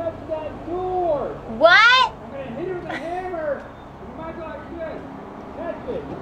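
Muffled voices talking through a closed glass door, the words unclear, with one louder, higher-pitched call about two seconds in.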